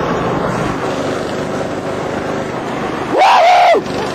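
Small 100cc go-kart engine running at speed under a ride-on sofa, with steady road and wind noise. Near the end comes a loud, high-pitched yell lasting under a second.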